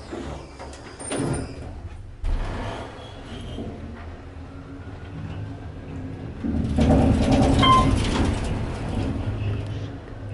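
Otis Series 1 elevator car going down on a rough, bumpy ride: the doors slide shut near the start, then the car runs with a low rumble that grows into loud shaking and rattling for about three seconds before easing off near the end.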